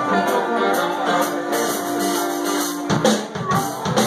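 Live blues-rock band playing: electric guitars, bass and drum kit, with a harmonica. A long note is held from just after the start until about three seconds in.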